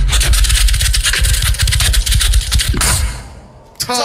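Live beatboxing through a PA system: rapid clicks and snares over heavy bass, which fades out about three seconds in as the round's time runs out.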